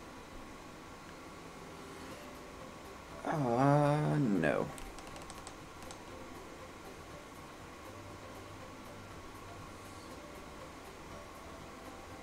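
A man's short wordless hum of about a second and a half, about three seconds in, its pitch dipping then rising. A few faint clicks follow, like computer keys being tapped.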